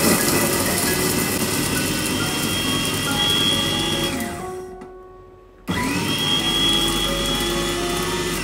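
Kova Kraser 1.8 L electric food chopper running with a steady whine as its blades grind garlic, shallots and chillies into a coarse paste. About four seconds in the motor spins down and stops, and after a pause of about a second it starts again abruptly and keeps running.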